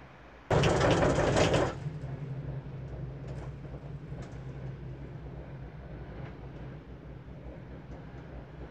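A sudden loud, rough burst of noise about half a second in, lasting about a second. After it, the steady low hum of a Girak six-seat gondola cabin riding along its haul rope, with a few faint ticks.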